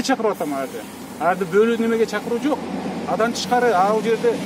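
A man speaking, with steady outdoor background noise underneath.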